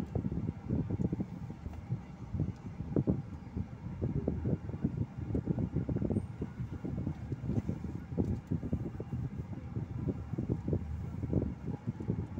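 Low, uneven rumble inside a car's cabin as it creeps in stop-and-go traffic: the car's engine and running noise, heard from the dashboard.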